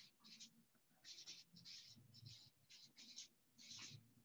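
Felt-tip marker writing on a paper flip-chart pad: a faint run of short, irregular scratchy strokes.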